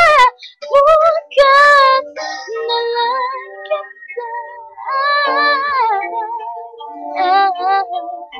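A woman sings a ballad with a videoke backing track. A long held note ends right at the start, then come short sung phrases over softer instrumental accompaniment, with louder phrases about five and seven seconds in.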